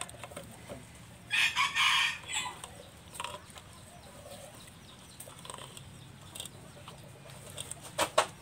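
A chicken calls once, loud and short, about a second and a half in, with a brief follow-up note just after. Otherwise only faint handling sounds of soaked rice being scooped and pressed into a mesh net bag.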